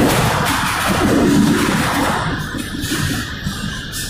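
Freight boxcar rolling over rough track, heard from inside the car: a loud, uneven rumble and rattle of the car body and wheels.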